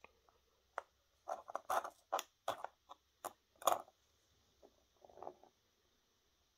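Small Dremel accessories and their plastic packaging being handled and set down on a mat: a quick run of clicks and rustles over about three seconds, then a shorter patch of rustling about five seconds in.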